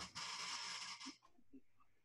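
A person's short breath intake between sentences, lasting about the first second, followed by near silence.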